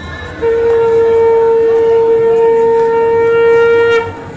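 Conch shell (shankha) blown in one long, steady note with a bright, horn-like tone, starting about half a second in and held to the end. It is the traditional auspicious call sounded at the shubho drishti rite of a Bengali wedding, as the bride is brought in.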